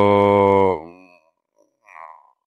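A man's drawn-out hesitation sound, 'ehh', held at one steady low pitch for nearly a second, then trailing off.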